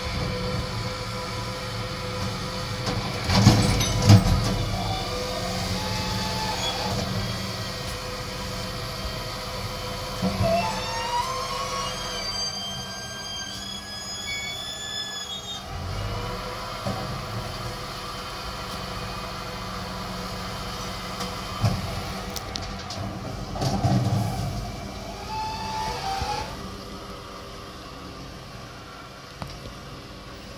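Rear-loading refuse truck idling at the kerb while its bin lift and hydraulics work, emptying wheelie bins. There are loud knocks of a bin being tipped a few seconds in and again about three-quarters of the way through.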